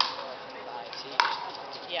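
Pickleball paddle hitting a plastic pickleball twice, about a second apart: two sharp hits, the second ringing briefly.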